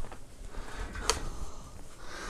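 A single sharp click about a second in, over faint room noise.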